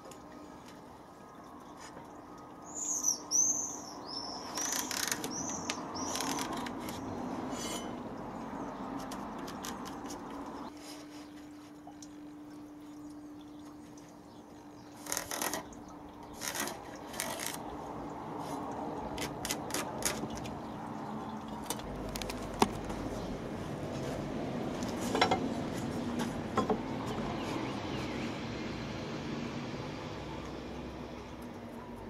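A small bird chirps a few quick high notes about three seconds in. Through the rest come light clicks, taps and scraping as a speed square and pencil are set on and drawn along a pressure-treated decking board to mark it out.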